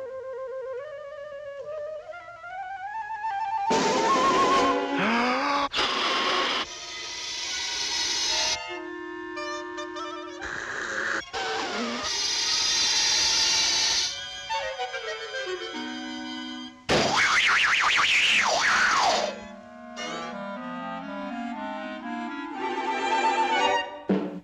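Cartoon orchestral underscore with woodwind and brass lines, broken several times by loud rushing sound effects. One of them, a little past the middle, carries repeated rising whistle-like sweeps.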